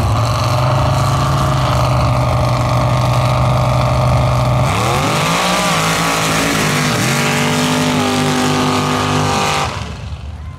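Mud-drag pickup truck's engine held at high revs on the start line, then launching: about five seconds in, the pitch dips and climbs again, stepping through shifts as the truck tears down the mud track. The sound falls away near the end.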